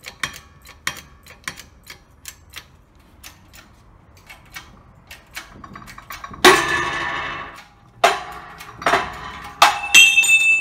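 A 20-ton bottle-jack shop press being pumped to force a worn-out front wheel bearing out of its hub. Light even clicking gives way, about six and a half seconds in, to a loud ringing metallic burst, then several sharp metal bangs with ringing as the bearing moves under load.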